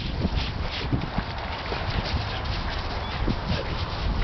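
Dog panting in quick breathy strokes, about three a second, over steady wind rumble on the microphone.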